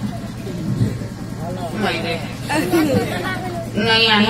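Speech only: voices talking at a fairly low level over a steady low hum, with louder talking starting right at the end.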